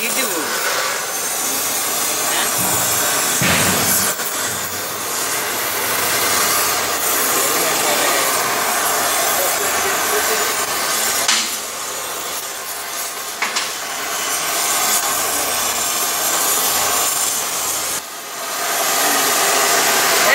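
Oxy-acetylene torch flame hissing steadily as it heats a stuck bearing cone on an axle spindle to free it. A few brief knocks sound along the way.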